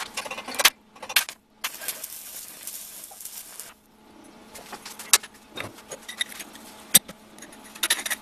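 Stick arc welding on a steel frame: a few sharp scratches and clicks as the electrode strikes the arc, then the arc burns with a steady hiss for about two seconds and stops abruptly. Afterwards there are scattered sharp metallic clinks and knocks, the loudest about seven seconds in.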